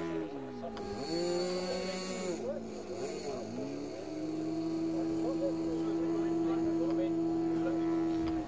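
The small internal-combustion engine of a radio-controlled model plane, turning its propeller. It is throttled down at the start and run up about a second in. It drops back around two and a half seconds, then climbs to high revs and holds there steadily from about four seconds, as the plane starts its roll across the grass.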